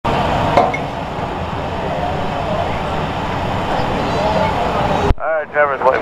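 Stock car engines running on the track, a steady dense rumble with faint voices under it, cut off suddenly about five seconds in by a race-control radio voice.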